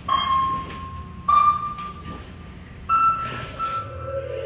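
Three held high notes, each a little higher than the last, starting about a second and a half apart and each fading after a sudden start.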